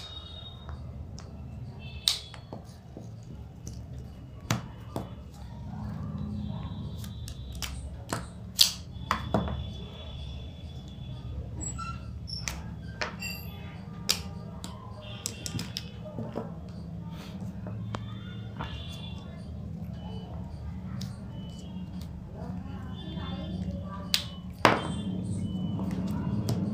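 Plastic connector-pen caps clicking as they are pushed together, a dozen or so sharp, irregularly spaced clicks over a steady low background hum.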